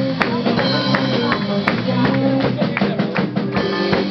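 A live band playing amplified music: electric guitar over drums, with frequent sharp percussive hits.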